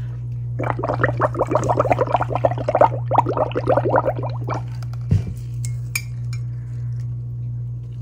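Dish soap and water being frothed up in a ceramic coffee mug: a rapid run of bubbling and clinking, about ten a second, for about four seconds, then a single knock.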